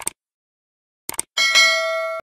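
Subscribe-button sound effect: quick clicks, two at the start and a rapid three a little after a second in, then a notification bell dings and rings on.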